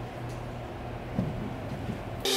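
Quiet workshop room tone: a low steady hum, with a faint brief sound about a second in.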